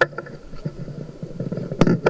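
Handling noise from a handheld microphone being taken back: irregular rustling and small knocks over a low rumble, with a sharp knock near the end.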